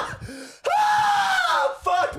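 A man screaming in pain after a hard slap: one long, high scream starting about half a second in and trailing downward.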